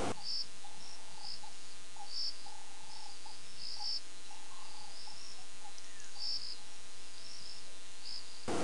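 Crickets chirping at night in short, irregular calls, roughly one or two a second, over a steady background hiss.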